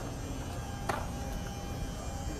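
Steady low mechanical hum with a thin, steady whine over it, and one faint click about a second in.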